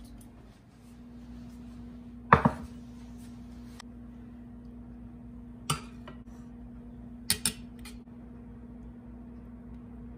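A metal spoon and pans clinking as pasta is spooned from a skillet into a small steel serving pan. There are about four sharp clinks, the loudest about two seconds in and a quick pair near the end, over a steady low hum.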